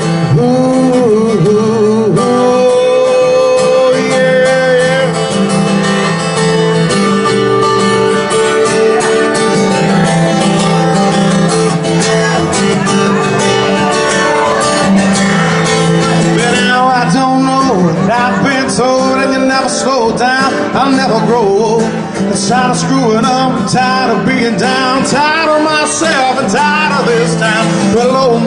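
Live solo steel-string acoustic guitar, strummed and picked at a steady pace through a PA, in an instrumental break of a country-rock song.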